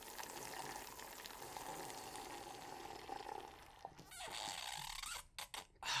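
Faint sounds of cereal milk being drunk straight from the bowl, with a brief break about four seconds in.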